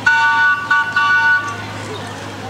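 A horn honking a few times in quick succession, a loud steady chord of several tones lasting about a second and a half in all.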